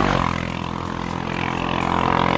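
A motor vehicle's engine droning steadily as it passes on the road, its pitch shifting right at the start.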